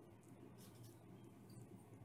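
Near silence: room tone in a small tiled bathroom, the drill not running.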